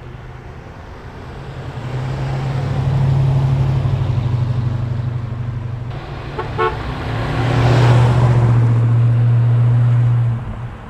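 A 1969 Dodge Dart GT convertible driving by, its engine and exhaust a steady low drone that swells as the car comes close and then fades. After a cut, a second pass swells again and peaks near the end.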